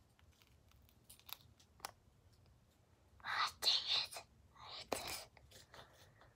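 A girl whispering to herself in two short breathy stretches about three and five seconds in, with a few faint clicks before.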